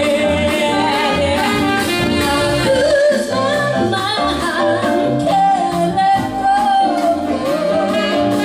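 Live band playing a song, with two women singing into microphones over electric bass, drums, guitar and a Nord keyboard.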